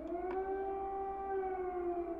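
Civil-defence air-raid siren sounding over a city: one long tone that rises in pitch over the first half second, then holds steady and sags slightly near the end.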